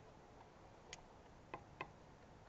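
Near silence with three short, sharp clicks: one about a second in, then two close together near the end.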